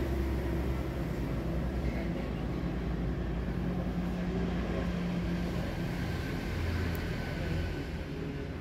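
A steady low engine-like hum with a few low pitched lines that shift slightly.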